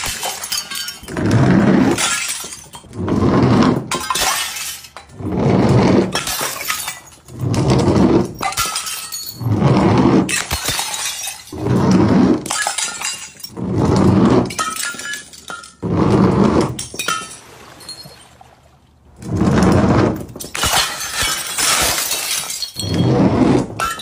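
Glass jars full of liquid shattering one after another, about a dozen loud crashes roughly a second and a half apart, with a short lull about three quarters of the way through.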